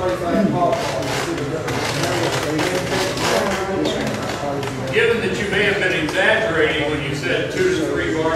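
Speech: indistinct talking in a room.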